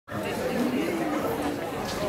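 Audience chatter: many voices talking at once in a large hall, none standing out.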